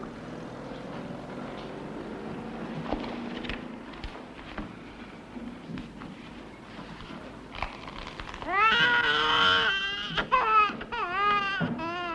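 Low room murmur with a few small clicks, then, about nine seconds in, a loud, high, wavering wail like a voice crying, rising and falling over several long cries.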